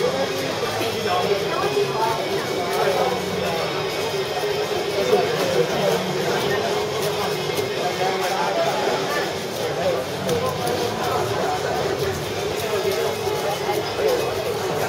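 Background chatter of many voices in a large room, over a steady hum.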